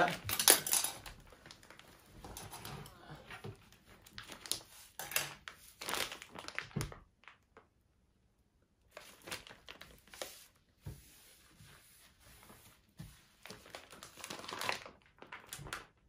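Plastic ration-heating bag crinkling as it is folded over and handled, in irregular bursts with a pause of about two seconds midway.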